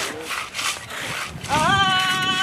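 A trowel scraping over wet cement as the grave's concrete top is smoothed, in a run of repeated strokes. Singing voices come back in about one and a half seconds in.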